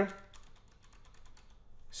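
A quick run of faint clicks at a computer, about ten a second, as the chart on screen is zoomed out to a longer time span.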